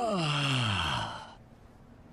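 A man's drawn-out "oh", falling steeply in pitch over about a second, over a steady hiss that stops abruptly about a second and a half in.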